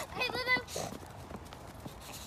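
A bulldog gives a short, pitched vocal call near the start, followed by a brief lower one.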